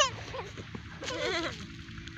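A short wavering, bleating call about a second in, lasting about half a second.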